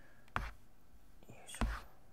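A whispered effort word, 'yoisho', while a metal spoon pushes a green grape down into thick, creamy cheesecake batter in a plastic tub. A single sharp tap comes about half a second in.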